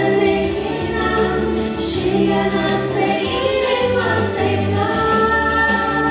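Two female voices singing a Romanian Christmas carol (colindă) together through microphones, with held notes, over a low instrumental accompaniment.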